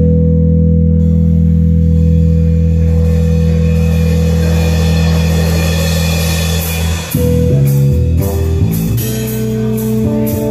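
A live jazz-fusion trio of double bass, electric bass and drum kit: a low bass chord held steady under a swelling cymbal wash, then about seven seconds in the basses break into moving notes and the drums come in with sharp hits.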